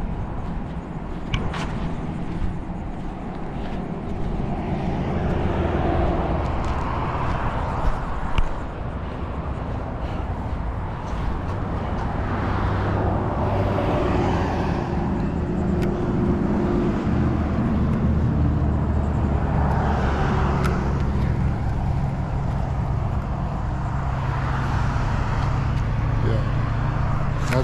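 A motor vehicle engine running nearby, a steady low hum that shifts a little in pitch, with a few light clicks and knocks over it, one louder knock a little after the middle.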